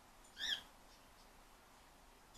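A single short, high-pitched squeak that rises and falls in pitch, about half a second in, against a quiet room.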